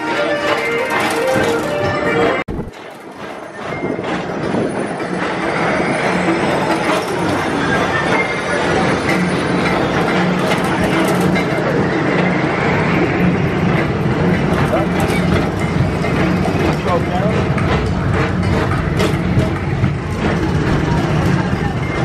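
Brief music that cuts off suddenly a couple of seconds in, then a PeopleMover car rolling along its elevated track: a steady rumble with a low hum and air noise.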